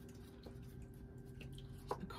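Faint handling of round cardboard fortune cards on a cloth-covered table: a few light taps and clicks, the sharpest near the end as a card is laid down. A steady low hum runs underneath.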